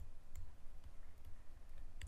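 Faint light clicks of a stylus tapping a tablet screen while writing digits, over a low steady hum.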